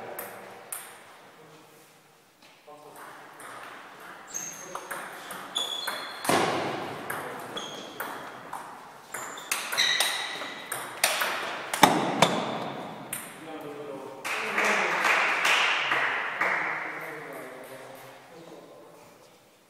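Table tennis ball struck back and forth between rackets and table: a rapid, uneven series of sharp clicks and short pings, ringing in a large hall. Voices come in near the end.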